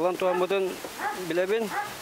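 A man's voice speaking in an interview.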